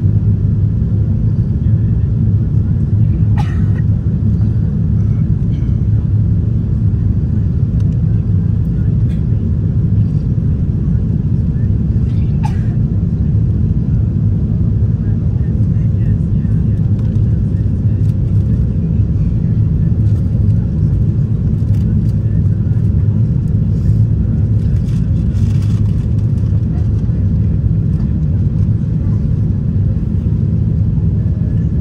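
Steady low rumble of a Boeing 747-8 cabin in flight, the GEnx engines and airflow heard from a window seat beside the wing. Two faint short chirps sound briefly over it, one early and one about twelve seconds in.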